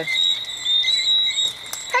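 A dense, steady chorus of high-pitched chirping, with short rising whistles repeating over it.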